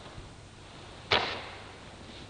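A single sharp swish-snap about a second in, fading over about half a second: a paper banknote being snatched from a hand.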